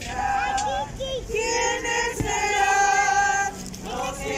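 A group of women singing a hymn together, holding long sustained notes, with a brief breath pause near the end before the next phrase.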